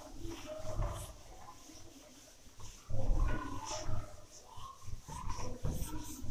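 A duster wiping across a whiteboard in irregular strokes, with short squeaks of the pad on the board.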